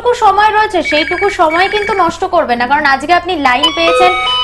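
A telephone ringing with a quick trilling ring for about a second, over ongoing speech.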